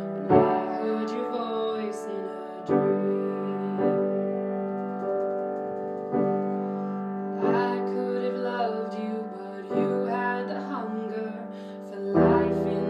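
Solo grand piano playing an instrumental passage of a slow ballad: chords struck every one to two and a half seconds and left to ring.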